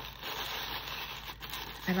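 Tissue paper rustling and crinkling as hands press and tuck it down into a cardstock box, with a short spoken word near the end.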